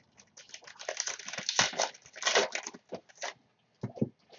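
Foil wrapper of a football card pack being torn open and crinkled: a dense run of crackling lasting about three seconds, then a short knock near the end.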